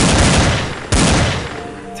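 Gunfire sound effect dropped into a phonk beat: two loud bursts of rapid shots, the second starting about a second in, each fading out.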